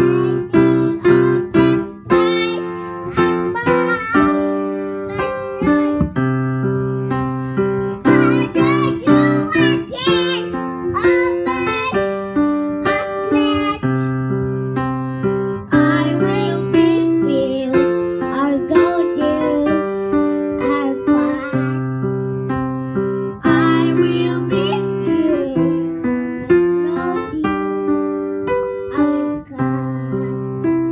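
Electric piano or keyboard playing chords, with a small child singing into a microphone over it at intervals.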